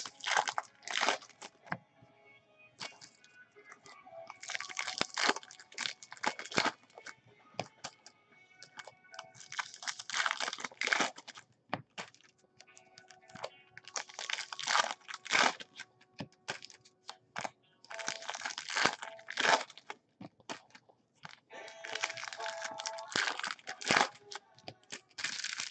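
Trading-card packaging being torn open and crinkled, in bursts of crackle a second or two long every few seconds.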